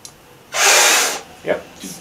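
A hard, sharp puff of breath blown through a half-inch steel conduit blowgun to fire a dart, about two-thirds of a second long and starting about half a second in; the dart fits too tight in the bore. A short, sharper sound follows a moment later.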